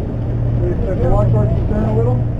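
A sportfishing boat's engine running, a steady low hum under the deck.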